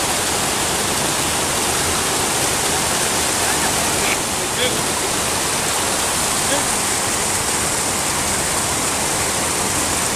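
Creek water rushing and splashing over rocks: a steady, even rush.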